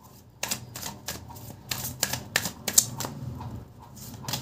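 A deck of tarot cards being handled and shuffled: a run of irregular sharp clicks and snaps of card against card, starting about half a second in.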